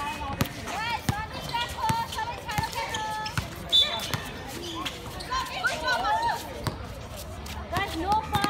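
A basketball dribbled on a hard outdoor court: a run of sharp bounces, some quick and some spaced, while voices call and shout over the play.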